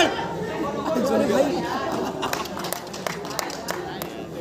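Players' voices, several people talking and calling out over one another during a cricket game, with a few short sharp clicks in the second half.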